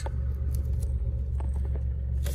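Citroen C1's engine idling, a steady low rumble heard from inside the cabin.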